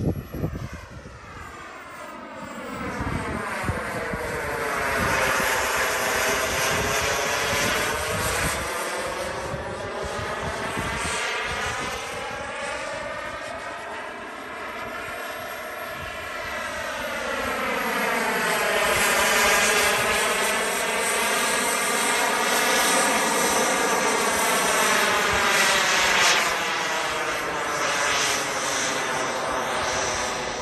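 Kingtech K102 model jet turbine of a radio-controlled Mirage 2000 running at flight power as the jet flies past. The jet noise swells and fades with a sweeping, phasing tone, dips around the middle and is loudest in the second half.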